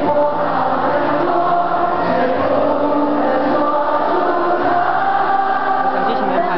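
A large group of voices singing a song together, with long held notes.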